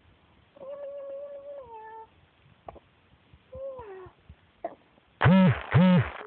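A three-month-old baby cooing: a long held coo that drops in pitch at its end, a shorter falling coo around the middle, then two loud, arching squeals near the end.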